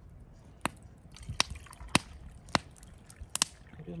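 Hot water poured from a small black camping kettle into a stainless steel cup, the trickle set against a handful of sharp pops from the wood fire burning beside it.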